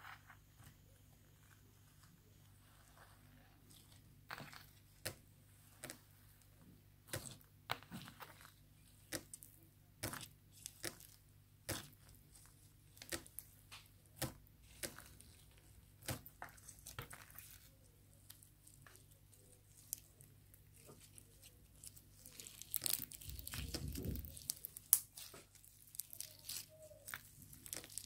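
Clear Sbabam Ice Dream slime packed with polystyrene foam beads being squeezed and kneaded by hand: faint, irregular crunchy crackles and pops, with a denser run of crackling about three quarters of the way through.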